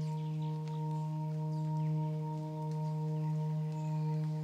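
Background music: a steady drone of several held tones, sustained without change.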